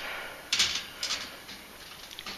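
Short scraping and rustling noises, the loudest about half a second in and fainter ones after it.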